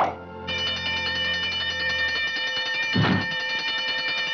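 Cartoon orchestral underscore. A sudden hit comes at the very start, then a held high chord with bell-like tones over a low note that fades out, and a short accented hit about three seconds in.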